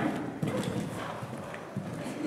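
Hoofbeats of a grey horse landing after a jump and cantering on the dirt footing of an indoor arena.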